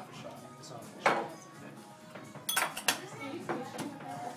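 Glassware, bottles and a metal shaker tin clinking and knocking on a stone countertop as a martini is mixed. There is one sharp knock about a second in, then a quick run of clinks near the end.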